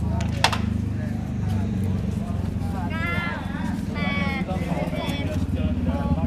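A motorcycle engine idling steadily with a fast, even pulse, under people talking, with a sharp click about half a second in.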